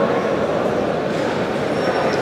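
Audience applauding, a steady dense clatter of clapping that holds at an even level throughout.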